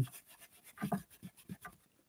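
Faint, irregular scratchy rubbing of a stencil brush working paint over a plastic stencil on paper.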